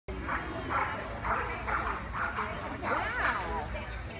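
A dog barking repeatedly, about six sharp barks in the first two and a half seconds, then a burst of higher calls that rise and fall in pitch.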